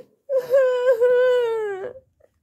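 A young girl's voice giving one long, drawn-out wail of protest, held on one pitch and sliding down near the end before breaking off. It is play-acted crying for a doll character.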